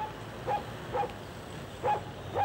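A dog barking in short single barks, about half a second apart, over steady low background noise.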